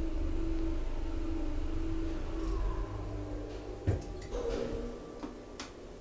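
KONE traction elevator running: a steady hum and low rumble that fades over the first few seconds, then a sharp click about four seconds in, a brief tone and a few lighter clicks.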